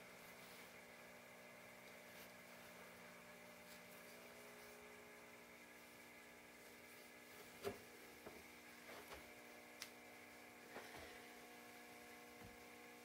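Near silence: room tone with a faint steady hum, and a few faint short clicks in the second half.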